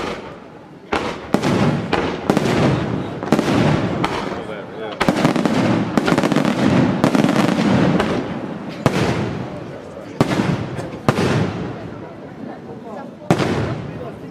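Aerial fireworks shells bursting in quick succession, with dense crackling between the reports in the first half. Toward the end the bursts come as single loud booms a second or more apart.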